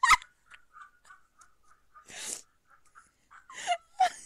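A woman's laugh ending at the start, then a short breathy exhale about two seconds in and a brief voiced sound near the end.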